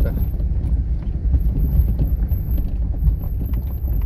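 Footsteps on a cobblestone street, with faint clicks over a steady low rumble.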